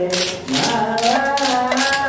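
Singing over hand percussion: sung voices holding and sliding between notes, with sharp drum strokes struck every third to half second.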